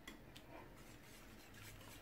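Faint, light scraping and a few soft ticks of a wire whisk stirring runny egg batter in a bowl.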